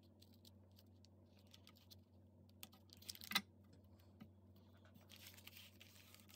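Faint handling noise of a paper and cardstock folder being worked by hand: scattered light clicks and rustles, with one sharper tick about three seconds in.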